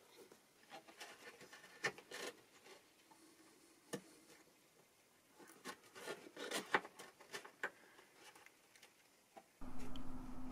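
Faint, irregular short scratching strokes of a homemade scalpel-blade cutter dragged along the wooden lining inside an acoustic guitar's body, scoring through it. The strokes come thicker in the second half.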